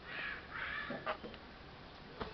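Two harsh, scratchy bird calls in quick succession, the second a little longer than the first, followed by a sharp click about a second in.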